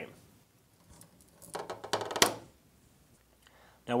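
Screen spline being pried out of the channel of a metal window-screen frame with a pointed tool: a short run of scratchy clicks and scrapes about a second and a half in, ending in one sharper click.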